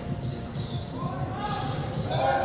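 Basketball bouncing on a hardwood court during live play, in a large, nearly empty arena, with faint voices in the background.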